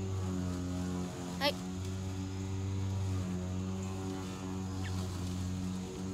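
Steady low mechanical or electrical hum with a stack of even overtones, holding level with no rhythm.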